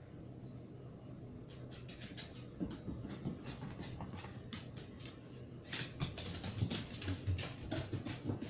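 A dog running up a flight of stairs: a quick patter of paw and claw clicks and knocks on the steps, growing louder and denser about six seconds in as it comes closer.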